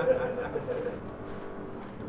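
A voice trailing off in the first moment, then low, steady room noise.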